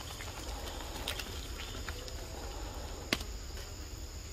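Steady, high-pitched insect chorus in forest. A few faint clicks come about a second in, and one sharp click just after three seconds.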